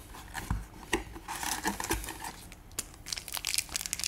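Foil booster-pack wrapper crinkling and crackling as it is handled, a quick irregular run of rustles and clicks, with a couple of soft thumps on the table.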